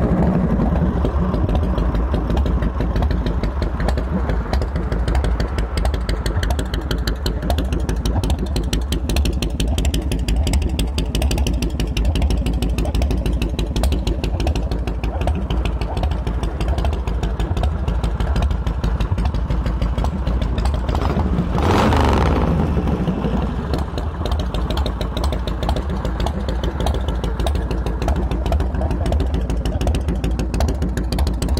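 Harley-Davidson 80-inch (1340 cc) Evolution V-twin with an S&S carburetor and straight exhaust, running at idle with a thump and a lope. The throttle is blipped once, briefly, about three quarters of the way through.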